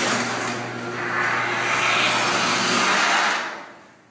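LiftMaster garage door opener running, its motor humming steadily as the sectional garage door travels along its tracks. The noise stops about three seconds in.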